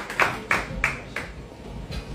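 Hand clapping in an even rhythm, about three claps a second, dying away a little past a second in: applause for a speaker who has just finished.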